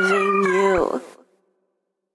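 A singer's held final note closing the song, its pitch dropping off under a second in and fading out about a second in.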